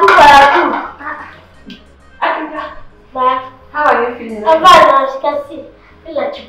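A person's voice in about five short, loud vocal outbursts, the first and the one near five seconds the loudest, over faint background music.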